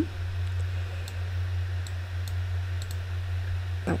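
A few faint, scattered clicks of a computer mouse over a steady low hum.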